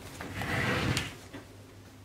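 Handling of the DOD Multi Kitchen Table's leg frame and fabric: a scraping, rustling burst lasting about half a second, ending in a sharp click about a second in.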